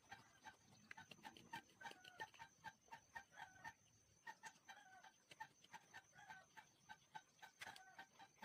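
Faint, rapid series of short pitched animal calls, several a second, some dipping in pitch, with light clicks between them.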